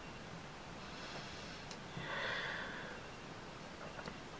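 Faint breathing out of e-cigarette vapour after a draw, a soft airy breath that is strongest about two seconds in.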